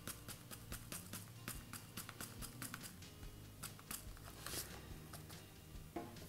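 Fish-food granules trickling from a foil pouch into a small ceramic bowl: a quick run of faint ticks, thinning out after about four seconds. A brief rustle of the pouch comes about four and a half seconds in.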